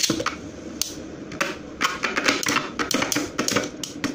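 Two Beyblade spinning tops, Slash Valkyrie and a fake Emperor Forneus, spinning in a plastic stadium with a steady whir. They clatter against each other and the stadium wall in quick, irregular clicks.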